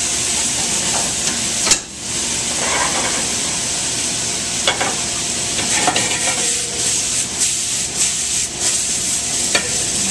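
Hot pans sizzling steadily on a gas range, seafood warming in sauce and Swiss chard wilting over high heat. A few sharp metal clicks of tongs and pans sound over it, the loudest about two seconds in.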